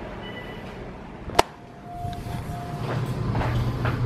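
Hotel elevator sounds: a sharp click a little over a second in, then a short beep tone, then a steady low hum that grows louder as the car gets under way.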